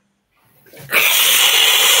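A man's long, loud hiss through bared teeth, done as an imitation of a dinosaur. It starts just under a second in and holds steady.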